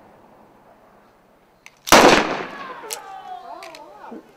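A single-action revolver fires one loud, sharp shot about two seconds in, with a faint click just before it and a short trailing echo.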